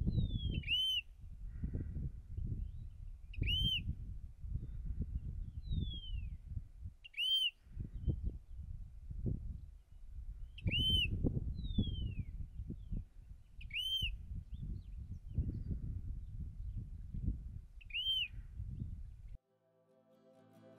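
Eastern clapper lark calling: six short arched whistles, repeating every three to four seconds, three of them preceded by a falling whistle. A loud, gusty low rumble runs underneath and cuts off suddenly near the end.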